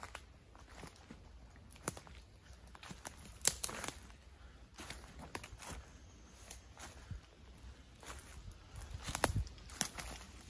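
Footsteps crunching and rustling through dry fallen leaves in an uneven walking rhythm, with louder steps about a third of the way in and again near the end.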